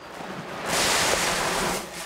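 Seed maize pouring from a paper sack into a maize planter's plastic seed hopper: a steady rush of kernels lasting just over a second, after paper rustling as the sack is tipped.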